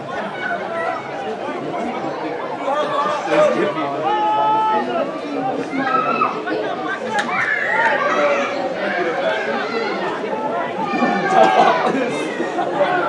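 Sideline crowd at a rugby game chattering and calling out, many voices overlapping, with louder shouts a few seconds in and again near the end.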